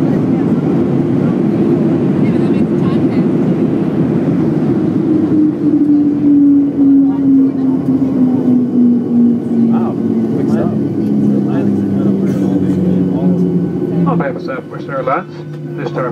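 Cabin noise of a Southwest Airlines Boeing 737 rolling out on the runway just after touchdown: a loud, steady engine and rolling rumble. From about five seconds in the engines' pitch falls steadily as they wind down and the jet slows.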